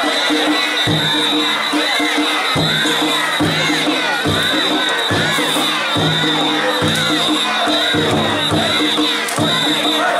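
Danjiri float's festival music: a drum beating in repeated phrases about once a second over a constant high ringing of gongs, with a crowd of team members shouting and cheering around it.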